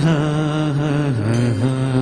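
Male singer holding long sung notes into a microphone in a Malayalam song, with a slight waver; the pitch steps down about a second in and rises again shortly after.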